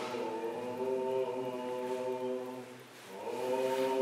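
Choir singing a slow chant in long held notes, breaking off briefly near three seconds before the next phrase.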